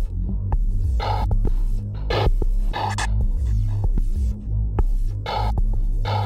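Electronic music: a deep, throbbing bass drone with short, bright synthesized bursts every second or two.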